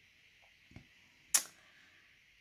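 A quiet moment of handling a paper sticker sheet over a planner: a faint tick, then one sharp, short click about halfway through.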